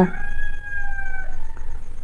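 An animal call: one long, nearly level note that falls slightly in pitch and fades out after about a second and a half.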